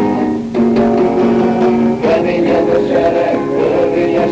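Acoustic guitar strummed, with a group of men's voices singing along from about two seconds in; a lo-fi recording made on a small dictaphone.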